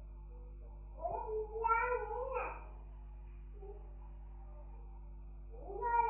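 Two high-pitched wavering voice-like calls: one about a second in, lasting under two seconds, and another starting just before the end. A steady low hum runs underneath.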